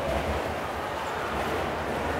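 Busy train-station concourse ambience: a steady hubbub of passing crowds and footsteps over a low rumble.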